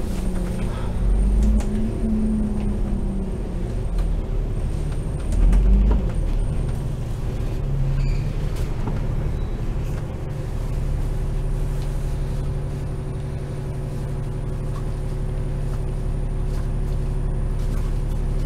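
Running noise of a double-decker bus heard from inside on the upper deck: a varying engine and road rumble as it draws up in traffic, then a steady engine idle with the bus stopped from about ten seconds in.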